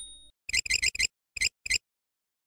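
Cartoon sound effect of a ringing, alarm-bell-like sound: a quick run of about five rings, then two more short rings.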